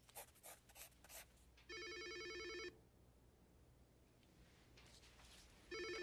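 Landline telephone ringing twice, each ring about a second long, the second starting near the end. Before the first ring there are a few short scratching strokes, like a pencil on paper.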